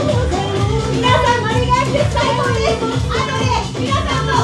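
EDM/house DJ mix played loud with a steady bass beat, and a high-pitched voice on a microphone over the music.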